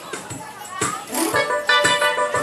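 Electronic keyboard playing a steady drum-machine beat, with sustained chords coming in about a second and a half in.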